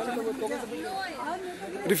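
Indistinct chatter of several people talking at once in the background.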